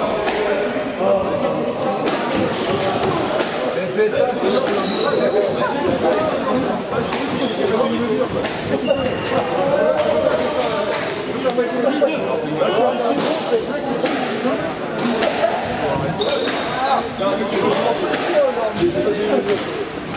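Squash ball hits: sharp smacks of racket on ball and ball off the court walls, scattered at first and more frequent in the second half, ringing in a reverberant court, over indistinct chatter of voices.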